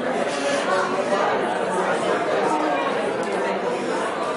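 Congregation talking in pairs all at once: many overlapping conversations blending into a steady hubbub in a large hall, with no single voice standing out.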